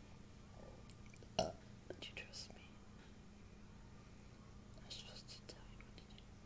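Faint whispering from a woman in short soft bursts, with one sharp click about a second and a half in, over a low steady hum.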